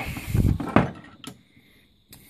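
A tobacco pipe being lifted out of a wooden pipe rack: low handling rumble with two light knocks in the first second and a half, then quiet.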